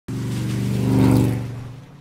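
A van's engine running as it drives past on a wet road, with tyre hiss; the sound swells to a peak about a second in and then fades away.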